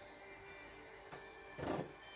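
Quiet background music, with a brief scraping knock a little after halfway as a Samsung Galaxy SmartTag is set down on a tabletop.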